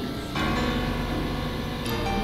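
Layered synthesizer tones in an experimental drone piece: a dense cluster of sustained tones, with a new chord striking in about a third of a second in and another near the end.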